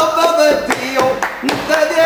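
A man singing a drawn-out, wavering line while hands clap a steady rhythm, about four claps a second.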